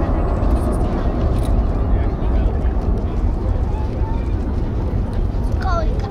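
Four turbofan engines of a C-17 Globemaster III military transport jet, heard as a steady low rumble as it flies in.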